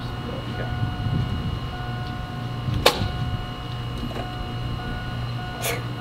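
Chevy Tahoe's electric fuel pump whining for a second or two each time the ignition key is switched on to prime the fuel system, twice, with a sharp click between and another near the end. The engine does not crank or run.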